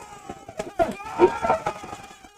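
Several men shouting and cheering together as a goal goes in.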